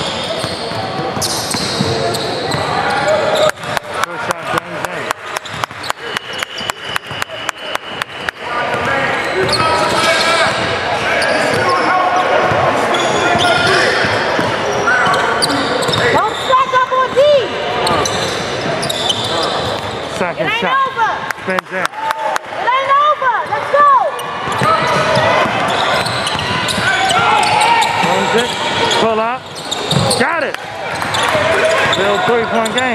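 Gym sound from a basketball game: voices on and around the court throughout, and a quick run of sharp knocks, about five a second for some five seconds early on. Short high squeaks of sneakers on the hardwood floor come in the second half.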